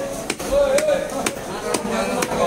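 Heavy cleaver chopping a rohu fish fillet on a wooden log block: several sharp, separate chops, with voices talking in the background.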